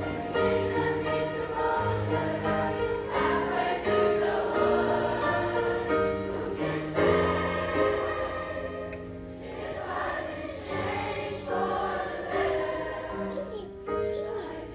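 Middle-school mixed choir singing in parts, holding sustained notes that change every second or so.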